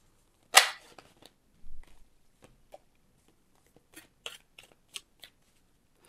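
Tarot cards being handled and drawn from the deck: a sharp slap about half a second in, then scattered light clicks and taps as cards are shuffled, pulled and one is laid on the table.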